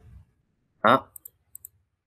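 Computer mouse clicking: two quick pairs of light clicks, the second pair about a third of a second after the first.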